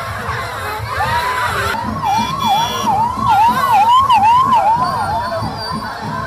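A siren yelping in quick repeated rising-and-falling sweeps, about two to three a second, starting about a second in, over the noise of a street crowd.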